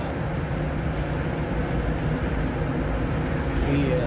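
Steady road and engine noise of a moving car heard from inside the cabin, a low, even rumble of tyres and engine at cruising speed.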